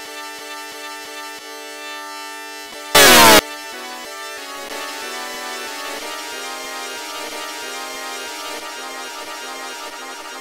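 Heavily processed electronic rendering of the 'oof' sound effect, heard as stacked, synth-like tones that step between pitches. About three seconds in, a very loud, distorted blast with a falling pitch sweep cuts in for about half a second. After it the tones turn warbling and wavering.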